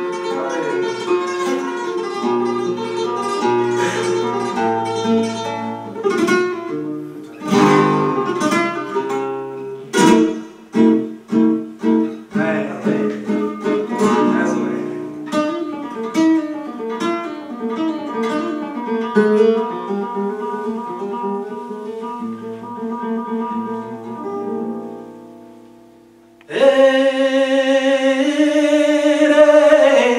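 Flamenco guitar solo, picked lines broken by a run of sharp strummed chords about a third of the way in. The guitar fades away, and near the end a male flamenco singer comes in with a loud, long, wavering line.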